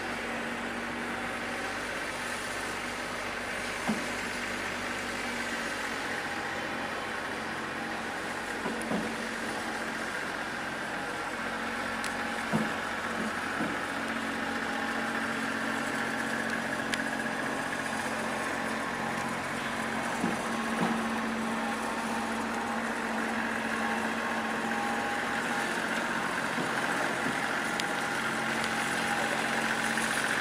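Compact tractor's engine running at a steady speed while towing a pitch roller, a constant hum that grows slightly louder in the second half, with a few faint clicks.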